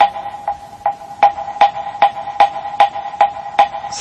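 A wooden knocker (moktak) is struck at a steady, even pace, about ten strikes in four seconds. Each strike has a short hollow ring.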